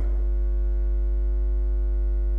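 Steady electrical mains hum: a strong low hum with a faint buzz of higher steady tones above it, unchanging throughout.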